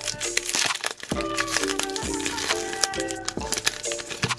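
Foil booster-pack wrapper crinkling as it is pinched and torn open, over background music.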